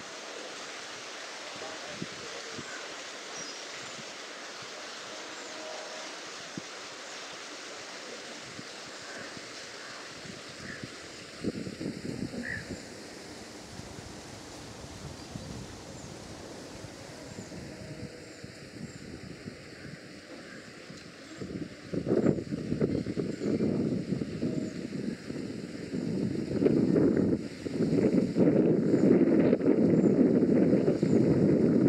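Steady open-air ambience with a faint even hiss. Wind buffets the microphone in a brief gust about a third of the way in, then loud and gusty through the last third.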